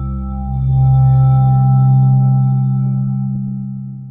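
Sustained drone music of steady, ringing low tones with fainter higher overtones, swelling about a second in and fading away near the end.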